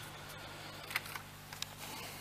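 A few short clicks and soft rustles of paper question slips being handled on a lectern, the sharpest about a second in and another just after one and a half seconds, over a steady low hum.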